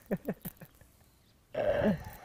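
A man laughing: a quick run of short chuckles, then a louder, rougher burst of laughter near the end.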